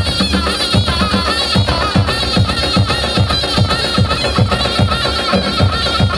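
Kurdish folk dance music: a large drum beating a steady rhythm under a wavering, reedy wind-instrument melody.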